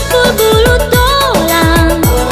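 Tapsel Madina (Mandailing) pop song: a sliding, held melody line over a steady beat of deep drum hits that drop in pitch, three or four a second.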